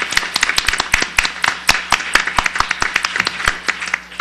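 Audience applauding: many hands clapping at once, fading out right at the end.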